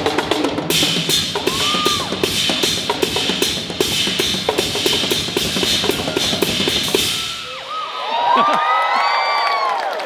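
Live drum kit solo: fast, dense bass-drum, snare and cymbal hits. About seven and a half seconds in the drumming stops and several voices whoop and cheer.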